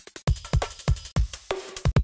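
A 174 BPM drum-and-bass drum break loop previewed from a sample browser: a fast, busy pattern of kick, snare and hat hits. It cuts off abruptly at the very end as the next break is auditioned.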